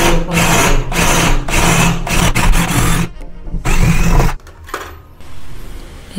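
Ryobi cordless drill boring through a PVC door panel, running in repeated short bursts with its motor humming under the cutting noise. It stops about four and a half seconds in.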